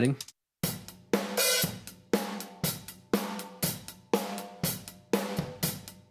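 Overhead-mic recording of a real drum kit played back through a heavily compressed parallel bus: hi-hat and cymbals with drum hits about twice a second, each hit followed by a short ringing decay. The compressor is set with a fast attack and its threshold set to smash.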